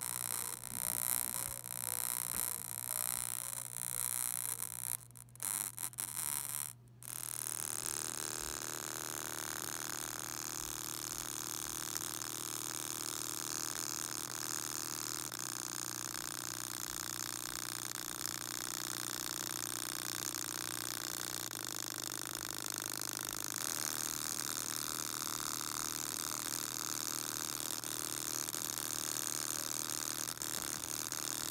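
Small speaker driven hard at full volume, giving a harsh, distorted, noisy buzz over a steady low tone. It cuts out briefly twice early on, then runs on evenly; it is being overdriven to make it blow out.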